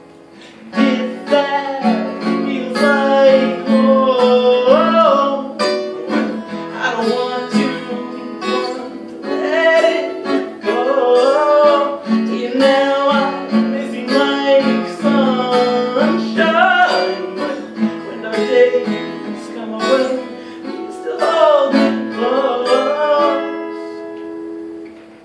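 Acoustic guitar being picked and strummed, with a wordless sung melody gliding over it; the playing comes in about a second in and eases off near the end.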